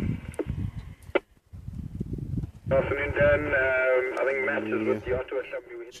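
Human voices without clear words, thin and radio-like, with a brief pause about a second and a half in.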